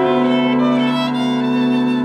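Violin playing long held notes of a Yiddish song, with upright piano accompaniment.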